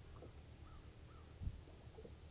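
Faint, distant bird calling twice in short arched calls, with a brief low thump about one and a half seconds in.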